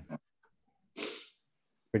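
A man's "Amen" ending, then one short, sharp intake of breath about a second in, before he speaks again near the end.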